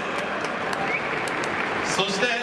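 Large stadium crowd applauding steadily in a domed ballpark.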